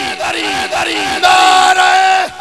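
A crowd of men chanting a religious slogan in unison, loud. Falling shouts come first, then one long held shout in the second half.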